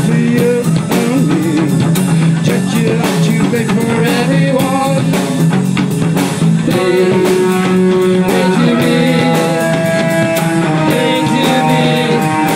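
Live punk-grunge band playing loudly: electric guitars and a drum kit pounding a steady beat, with a woman's singing voice coming in during the second half.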